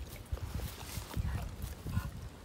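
A dog stepping right over a camera set low in the grass: irregular dull thuds close to the microphone, with crackling of dry grass.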